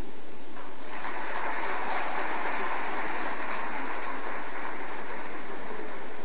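Audience applauding, swelling up about a second in and continuing steadily.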